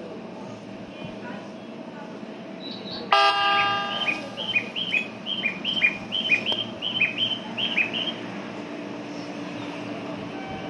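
A JR 205 series electric train sounds one short horn blast about three seconds in, as it prepares to depart. A quick run of high two-note chirps follows for about four seconds, over the train's steady hum.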